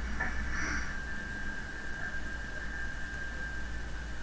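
Steady low electrical hum with a faint, thin high-pitched whine held from about a second in, and a couple of faint brief noises near the start.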